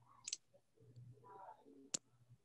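Quiet room with two faint clicks: a short one about a third of a second in and a sharper one just before the end. They are computer mouse clicks advancing the presentation slides.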